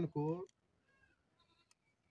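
A man says one drawn-out word, then a pause in which only faint, thin sounds and a single small click can be heard against quiet outdoor background.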